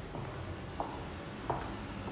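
Footsteps on a hard plank floor: two short steps, about a second in and again near the middle, over a low steady hum.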